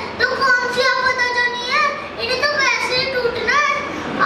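A boy talking into a microphone. He holds one long drawn-out sound for about the first second and a half, then his voice rises and falls in quicker phrases.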